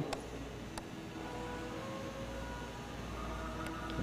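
Quiet indoor room tone: a steady low hum and hiss with faint background music, and a couple of faint clicks.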